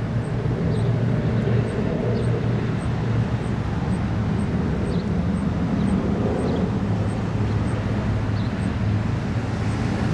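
Steady low hum of a vehicle engine running, with faint high ticks about twice a second.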